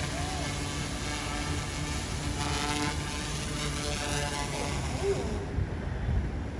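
The two tilting rotors of a Zero Zero Robotics V-Coptr Falcon bicopter drone whirring with a steady hum as it descends and touches down. Its higher sound falls away near the end as it settles on its landing gear.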